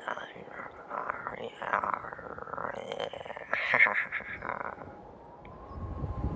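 A person's voice whispering and murmuring without clear words. It is loudest about two thirds of the way through and fades near the end.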